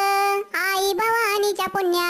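A high, pitch-raised cartoon-cat voice (Talking Tom style) sings a Marathi patriotic song, holding long notes. The singing breaks off briefly about half a second in and again near the end.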